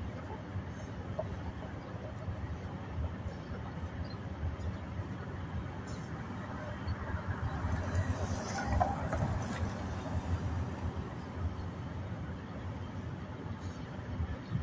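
Low, steady outdoor background rumble that rises and falls unevenly, with a faint brief vocal sound about eight seconds in.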